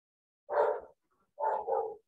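A dog barking three times: one short bark, then two quick barks close together.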